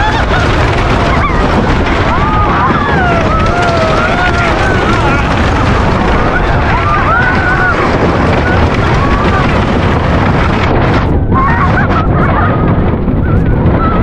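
Roller coaster train running on its track: a loud, steady rumble of the cars and wind on the microphone, with riders' shrieks and yells wavering in pitch over it.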